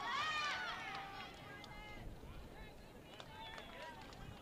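High-pitched shouting voices on an open sports field, loudest in the first second, then fainter scattered calls over steady outdoor background noise.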